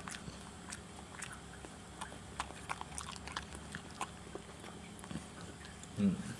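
A small dog gnawing and chewing a Jumbone chew treat: faint, irregular crunching clicks, several a second.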